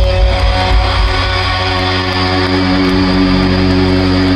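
Glam metal band playing live through the PA with no vocals: electric guitar and bass guitar hold sustained notes over the drums, with a heavy low end.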